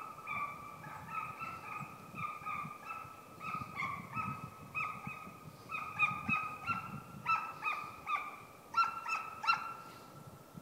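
Drever hound baying on the track of a roe deer: a quick, steady run of short high bays, about three a second. The bays grow louder from about six seconds in, then stop just before the end.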